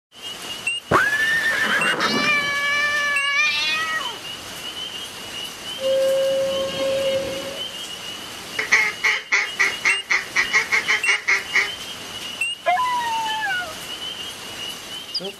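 A run of different animal calls, one after another with short breaks: drawn-out calls, a low steady note, a rapid series of pulses at about four or five a second in the middle, and falling calls near the end.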